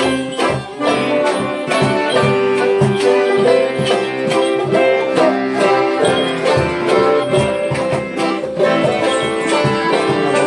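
Lively live acoustic tune on accordion and banjo, the accordion holding chords under quick plucked banjo notes, with a hand-held frame drum keeping a steady beat.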